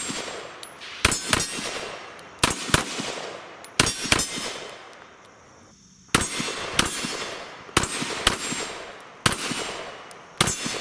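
Ruger American Pistol in 9mm firing a quick string of shots, roughly two a second, each sharp report trailing off in echo, with a pause of about a second and a half midway before firing resumes.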